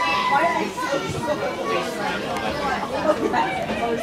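Several voices calling and shouting over one another, players on the pitch and spectators at the touchline, with no single voice standing out.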